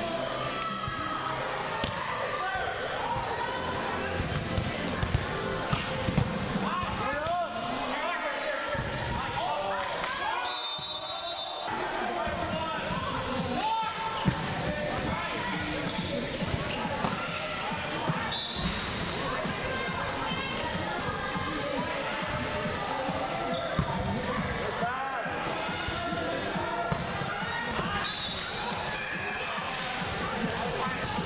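Volleyball being played in a large indoor hall: sharp smacks of the ball off hands, arms and the hardwood floor, heard now and then, with a cluster of them about five to six seconds in. Players' voices and calls run underneath throughout.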